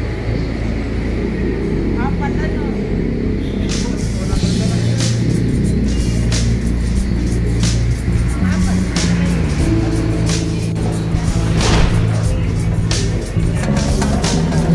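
Background music with a beat, mixed with indistinct voices.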